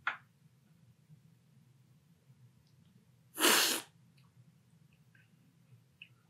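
One sharp, airy slurp of coffee from a cupping spoon, lasting about half a second a little past the middle. It is the forceful cupping slurp that sprays the coffee across the palate to taste it.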